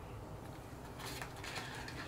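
Faint handling of a small cardboard box: light scrapes and rustles starting about a second in as it is being opened.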